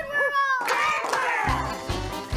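Cartoon theme-song intro: short arching pitched sound effects and then a long falling glide, with a steady musical beat coming in about a second and a half in.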